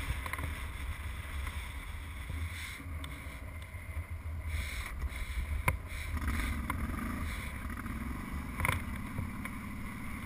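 ATV engine running as the quad rolls slowly over loose rock, with a steady low rumble; its engine note comes up about six seconds in. Two sharp knocks, a few seconds apart, stand out over it.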